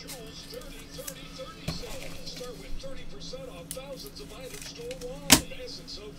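Gloved hands handling trading cards and a cardboard card box on a tabletop, with a few light clicks and one sharp knock about five seconds in as the box is set down, over faint background music.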